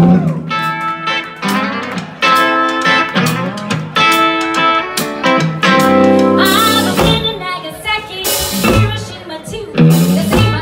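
Live rockabilly band playing a song's opening, electric guitar out front with held, ringing notes over drums. Two cymbal crashes come near the end.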